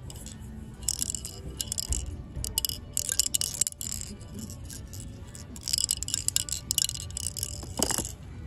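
A small plastic ball rattling and clicking inside a clear plastic egg-shaped maze toy as it is tilted and shaken, in several bursts of quick clicks.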